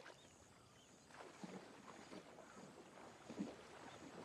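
Faint sloshing and splashing of water from a person wading through a shallow lake, with a few louder sloshes about a second and a half in and the loudest shortly before the end.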